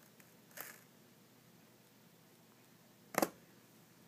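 Quiet room tone broken by two short handling noises: a faint one about half a second in and a sharper, louder knock about three seconds in.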